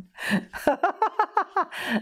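A woman laughing: a sharp in-breath, a quick run of short ha-ha pulses, then another gasping breath.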